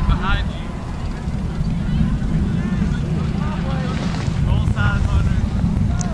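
Wind buffeting the microphone, a steady low rumble, with faint distant voices of players calling on the field.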